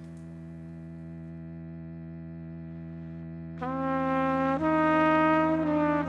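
Solo trumpet over a low, steady hum: the trumpet comes in about three and a half seconds in with long held notes, stepping to a new pitch twice.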